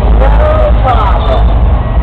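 Crowd voices calling out over a steady low rumble.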